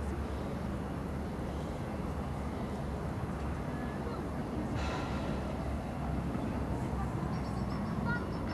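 Steady low outdoor rumble of open-air ambience, with a brief rush of noise about five seconds in and a quick run of faint high ticks near the end.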